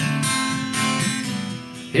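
Acoustic guitar strumming chords in an instrumental gap between sung lines, softening briefly near the end.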